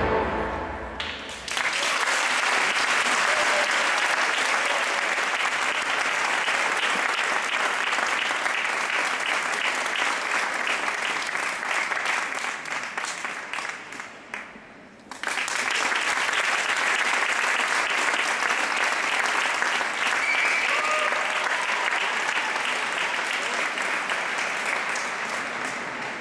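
Audience at an ice rink applauding as a figure-skating pair's music ends: the last notes die away in the first second or so, then steady clapping fills the rest. The clapping thins about halfway through and returns suddenly at full strength.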